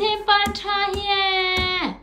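A baby vocalising one long held 'aah' on a steady pitch that slides down sharply and stops just before the end.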